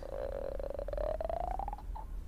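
A woman's drawn-out, buzzy whine of frustration, rising slowly in pitch for nearly two seconds, then stopping.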